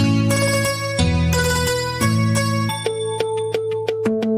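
Instrumental music: a bansuri (bamboo flute) melody over a karaoke backing track with bass and chords, its held notes changing every second or so.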